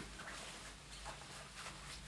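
A quiet pause: faint room tone with no distinct sound standing out.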